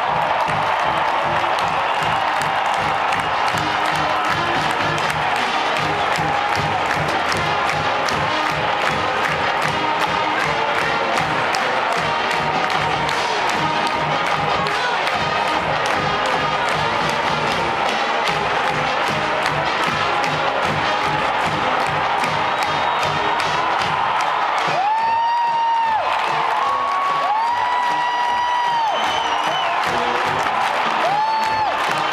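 Marching band of brass and drums playing at full volume to a steady drum beat, with a stadium crowd cheering under it. Near the end the band holds a few long sustained notes.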